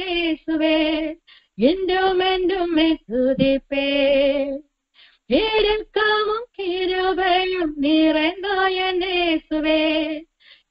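A woman singing a Tamil Christian song solo and unaccompanied, heard over a telephone line. She holds long notes with vibrato and breaks off briefly about a second in and again near the middle.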